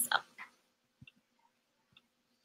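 A woman's voice finishing a word, then near-quiet with two faint clicks about a second apart over a faint low hum.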